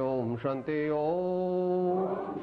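A man's voice chanting a Jain prayer in a slow melody, each syllable held on a steady note, with a long held note from about a third of the way in.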